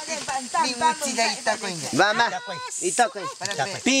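People talking back and forth in rapid conversation, over a steady high-pitched drone of rainforest insects.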